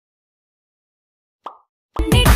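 Digital silence, broken about one and a half seconds in by a single brief pop. Music starts again right at the end.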